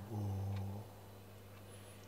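A man's low sung note, held under a second and then ending. It is followed by a pause with only a faint steady hum underneath.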